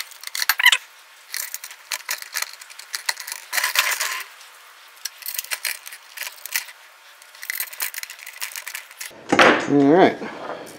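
Light metallic clicks and clinks of needle-nose pliers and small steel nuts against a swivel stool's metal seat plate and bolts as the nuts are held and started by hand. A brief voice-like sound near the end.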